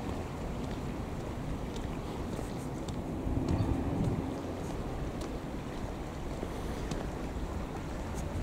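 Wind rumbling on the microphone of a handheld camera outdoors, swelling louder for about a second around the middle.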